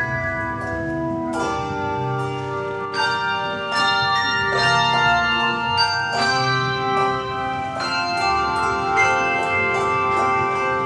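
Handbell choir playing a piece on tuned bronze handbells: chords struck together every second or so and left ringing, overlapping into a sustained wash of bell tones.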